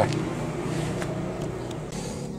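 A steady low mechanical hum, slowly fading, with a faint click about a second in.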